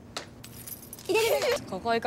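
A young woman's voice speaking a short Japanese line, with a light metallic jingling behind it about half a second to a second and a half in.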